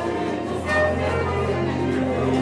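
Church hymn music: held chords with voices singing together over an instrumental accompaniment.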